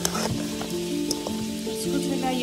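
A metal spoon stirs spiced duck meat in a steel pan, clinking a few times against the metal, with a light sizzle. Background music of sustained notes plays under it.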